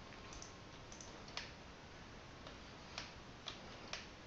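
About six faint, sharp clicks from a computer mouse and keyboard, spaced irregularly and sharpest about a second and a half and three seconds in, over a low steady hiss.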